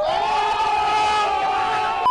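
A person in a crowd letting out one long, held scream that rises slightly at the start and then stays on one pitch, with crowd noise behind it; it is cut off abruptly.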